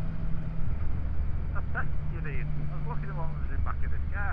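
Motorcycle engine running steadily while cruising, with road and wind rush, heard from the rider's own bike.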